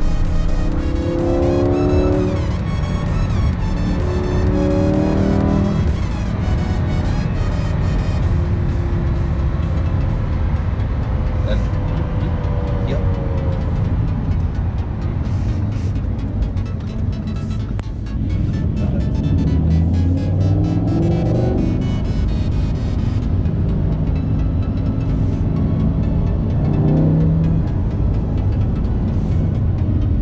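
Music over a Lamborghini Huracán's V10 engine, which revs up several times under acceleration, its pitch climbing with each pull.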